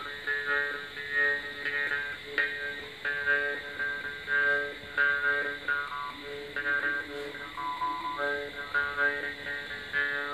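Balochi chang (metal jaw harp) being played: a steady drone under a rapid plucked rhythm, with the melody picked out in shifting high overtones in short repeated phrases.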